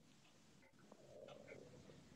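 Near silence: faint room tone with a few faint, indistinct sounds.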